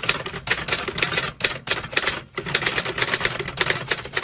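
Typewriter sound effect: a rapid run of keystroke clacks, with two short breaks in the middle.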